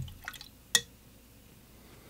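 Watercolour brush being rinsed in a water jar: a soft knock, a few small watery clicks, then one sharp tap about three-quarters of a second in, the loudest sound, as the brush knocks against the jar.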